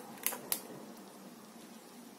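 Thin plastic stencil being peeled off a paste-covered tin and handled: two short clicks in the first half second, then faint room noise.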